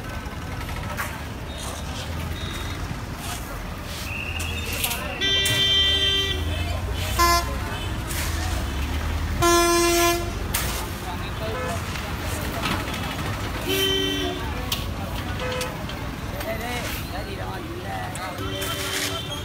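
Vehicle horns honking in busy street traffic: a long honk about five seconds in, a short toot soon after, another honk around ten seconds and one more near fourteen seconds, over a steady traffic rumble and crowd chatter.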